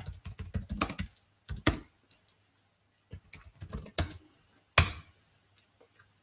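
Typing on a computer keyboard: quick runs of keystrokes in short bursts as a terminal command is entered, then a single harder key press about five seconds in as the command is sent.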